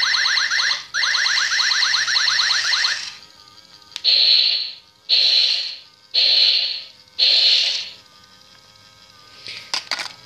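Toy remote-control robot's electronic sound effects from its small built-in speaker: a fast warbling trill for about three seconds, broken once about a second in, then four short harsh blasts about a second apart. Its sound has become distorted, as the owner says.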